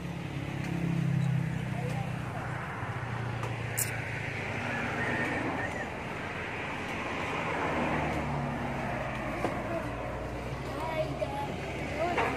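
A motor vehicle engine running, its hum swelling twice, with indistinct voices in the background.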